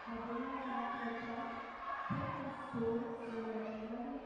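Two dull low thumps about half a second apart, near the middle, over steady held tones of background music in the sports hall.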